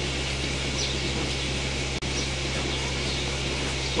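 A steady low mechanical hum with a faint even hiss, with a few faint short high chirps over it.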